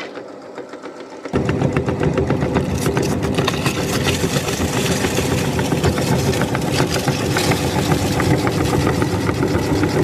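Motor-driven meat grinder switching on about a second in and running steadily, crunching chips through its cutting plate into crumbs.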